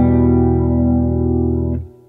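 Electric guitar in a clean tone, three notes of an E minor chord (E, B and G) ringing together, then damped near the end so the sound stops suddenly.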